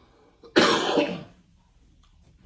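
A man gives one hard cough into his fist, clearing his throat. It starts about half a second in and lasts under a second.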